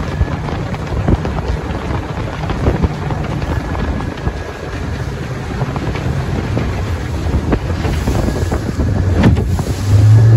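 Small fibreglass boat running across chop behind a 70 hp Yamaha outboard: a loud rush of wind on the microphone over the low engine note, with frequent short knocks of the hull meeting the chop. The engine note grows stronger near the end.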